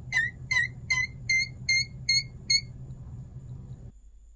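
Fluidmaster 400-series toilet fill valve squeaking as it shuts off at the end of a fill: a rapid series of about seven high squeaks, roughly two and a half a second, over the low rush of the filling water. The squeaks stop a little past halfway, and the water sound runs on until it cuts off suddenly near the end.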